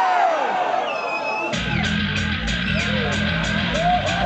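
Shouting voices, then about a second and a half in a live thrash metal band starts playing: distorted electric guitars, bass and drums, with a cymbal struck about four times a second.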